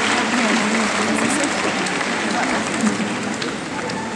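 Audience applauding steadily in an arena, with voices of people in the crowd over the clapping.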